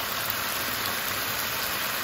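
Onions, bell peppers and raw beef liver strips sizzling steadily in a hot frying pan as the liver is slid in.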